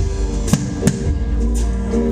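A live band playing an instrumental passage: a nylon-string acoustic guitar strummed over a drum kit, with two sharp drum hits about half a second and just under a second in.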